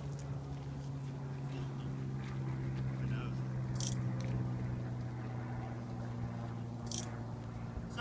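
A steady low mechanical hum throughout, with two brief faint hissing sounds about four and seven seconds in.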